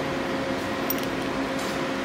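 Steady machine hum and hiss, with one faint click about a second in.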